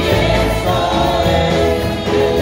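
A live church band plays a gospel chorus, with a trumpet lead over drums and keyboard and singing voices.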